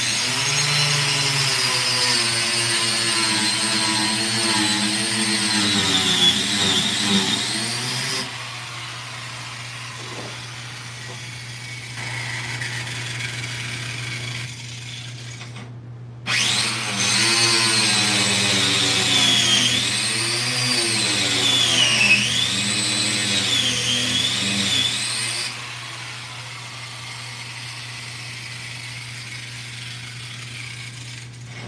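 Angle grinder with a grinding disc grinding the edges of a cut in a car's plastic rear bumper. It runs in two long passes, the first to about 8 seconds in and the second from about 16 to 25 seconds, with the motor's whine dipping and rising as the disc bites into the material. It is quieter between the passes.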